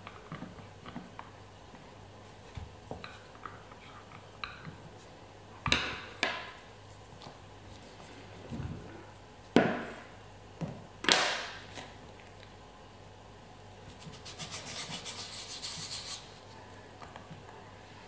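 Sugarcraft tools handled on a plastic veining board: a small plastic rolling pin rubbing over flower paste, a few sharp knocks as tools are put down and picked up midway, and a brief fast clicking rattle near the end as a plastic cutter is handled.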